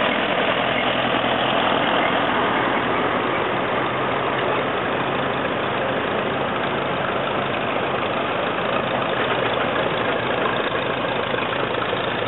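Ferguson tractor engines running steadily at low revs.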